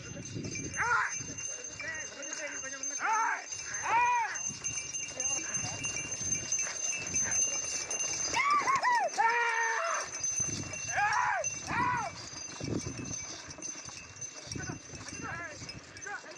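Men's loud hollering and rising-and-falling shouts, urging on a pair of running bulls that drag a wooden sled. The calls come in repeated bursts over a faint steady high whine.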